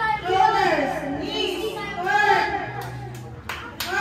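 Excited voices of children and teenagers shouting and chattering together at a party game, with two sharp clicks near the end.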